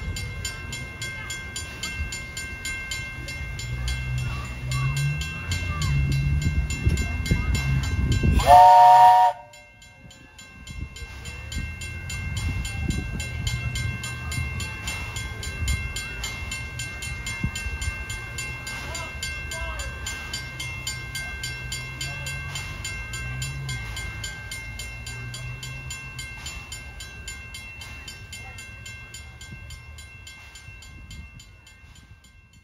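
1907 Baldwin steam locomotive No. 3 and its train running with a steady low rumble; about eight seconds in comes one short, loud blast of its steam whistle, cut off abruptly. The running then resumes and slowly fades.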